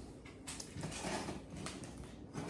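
Box cutter scraping and slicing through packing tape on a cardboard mailing box: faint, in a few short scratchy strokes starting about half a second in.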